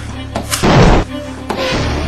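Dramatic film-score music with a single loud, deep boom about half a second in, dying away over about half a second.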